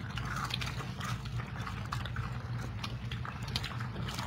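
People eating fries: irregular small clicks and crunches of chewing and handling food, over a steady low hum.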